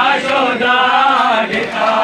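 A group of men chanting a mourning lament (nauha) together, loud and continuous, with the sung line rising and falling in pitch.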